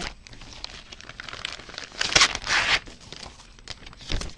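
Clear plastic kit packaging crinkling and rustling as a paper pattern sheet is slid out of it, loudest in a burst about two seconds in.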